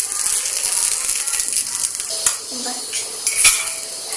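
Oil sizzling in an appe pan while a metal spoon lifts the appe out onto a steel plate, with a steady hiss and a couple of sharp clinks of spoon on pan and plate, the louder one near the end.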